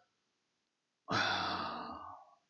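A man sighing: a single long breath out that starts about a second in and tails off.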